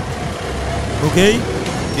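A man's voice briefly saying "ok" into a studio microphone, over a steady low background rumble.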